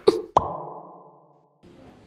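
Short logo sound effect: two quick pops near the start, the second ringing on as a low tone that fades away over about a second.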